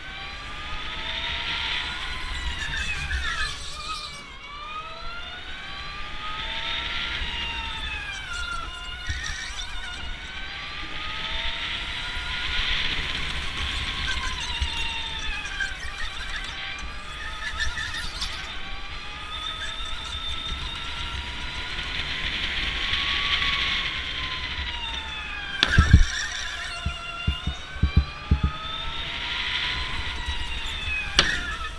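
Electric go-kart's motor whining, its pitch climbing as the kart accelerates down each straight and dropping off into the corners, over and over. A run of sharp thumps comes near the end.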